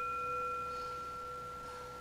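Handheld singing bowl ringing on after a single strike: a steady, pure tone with a fainter higher overtone that fades out about a second in, the whole ring slowly dying away.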